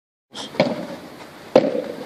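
Two sharp knocks about a second apart, each followed by a brief ring.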